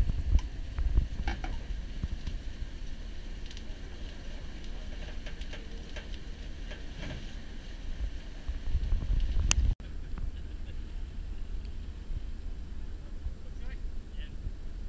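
Wind rumbling on the microphone, with scattered faint clicks and knocks; the rumble grows louder just before nine seconds in and then cuts off suddenly.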